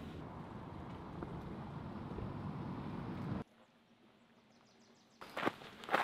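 Steady road and engine noise inside a moving van's cabin, which cuts off abruptly about three and a half seconds in to near silence; a few faint knocks near the end.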